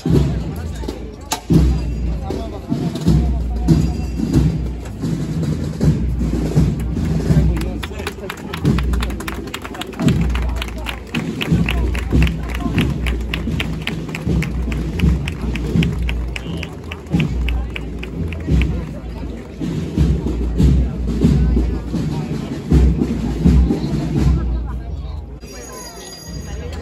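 Procession band music with drumbeats, over the chatter of an outdoor crowd. About halfway through there is a run of quick, regular taps.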